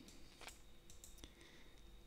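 Two faint computer mouse clicks over near silence, about half a second and about a second and a quarter in.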